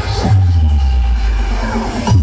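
Electronic dance music played loud through big outdoor sound-system speaker stacks, with a deep bass note that slides down in pitch about a quarter second in and is then held.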